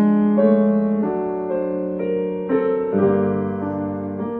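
Grand piano played solo in a slow passage, notes and chords held so that they ring into one another, a new one sounding about every half second to a second.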